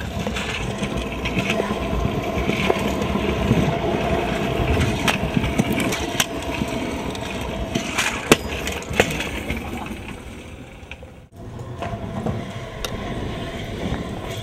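Scooter wheels rolling on rough concrete, a steady rumble, with sharp clacks as the deck and wheels hit the ground on jumps and landings. The sound breaks off suddenly about eleven seconds in, then the rolling starts again.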